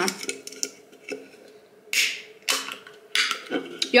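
Aluminium soft-drink can of carbonated Fanta Orange Zero opened by its pull tab: light clicks of fingernails and tab, then a short sharp crack and hiss of the can venting about two seconds in, followed by a couple more clicks.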